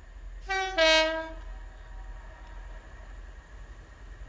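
Two-tone horn of an approaching diesel multiple unit train: a short higher note about half a second in, then a louder, longer lower note lasting about half a second. It is the horn that trains must sound on the approach to this request stop.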